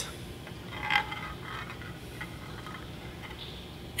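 A marble rolling and clicking lightly down a 3D-printed plastic staircase, with a slightly louder sound about a second in followed by faint scattered ticks.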